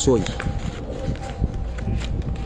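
A man's voice breaking off at the start, then a few faint clicks and soft rustles of hand-held handling.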